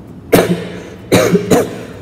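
A man coughing: two loud coughs about a second apart.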